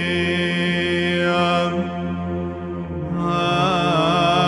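Greek Orthodox Byzantine chant: voices singing a long, drawn-out melody over a steady low held drone (the ison). The upper voices thin out briefly around the middle, then the melody returns with wavering ornamented turns.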